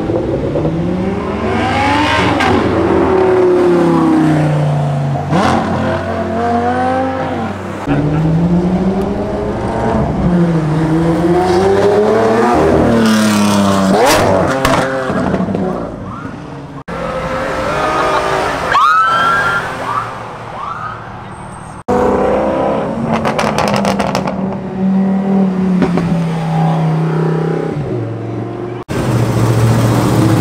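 Performance car engines revving hard as the cars accelerate past one after another, the pitch climbing and dropping with each gear change, with abrupt breaks between passes.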